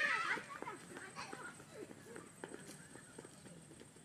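Children's voices: a brief loud shout at the start, then faint scattered calls and light running footsteps on a dirt path as they run off and fade away.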